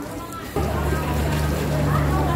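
Stone pestle grinding and scraping peanut sauce in a stone cobek. About half a second in, a steady low engine hum starts and becomes the loudest sound.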